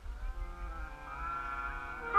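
Brass instruments of a marching band holding a soft sustained chord of several pitches that swells steadily louder.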